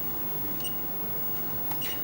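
Steady low background hiss of room and recording noise, with a few faint clicks.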